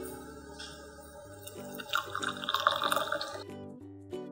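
Background music, with hot milk tea poured from a saucepan through a wire-mesh strainer into a glass mug, the liquid splashing loudest in the second half.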